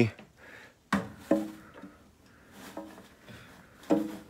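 A man's voice in short wordless sounds, murmurs and exclamations: one about a second in, another just after, and a sharp one near the end. Faint room tone lies between them.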